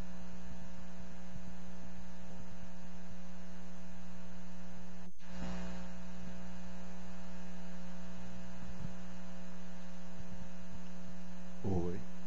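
Steady electrical mains hum on the audio line, with a brief dropout about five seconds in.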